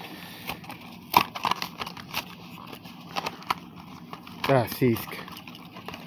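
Plastic blister packaging of a carded diecast toy car being opened by hand: scattered crackles and sharp clicks, the loudest about a second in. A short voiced sound comes near the end.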